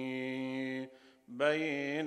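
A man chanting an Arabic religious recitation, holding one long note, breaking off a little under a second in for a breath, then starting a new phrase with a rising note.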